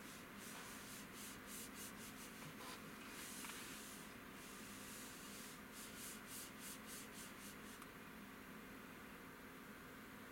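A hand rubbing in quick soft strokes, about three a second, in two runs with a pause between them, faint over a steady low hum.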